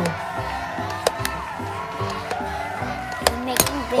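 Background music with a steady beat, over scattered plastic clicks from an Oonies toy balloon inflator's hand pump. Near the end there is a sharp pop as the small balloon in the chamber bursts.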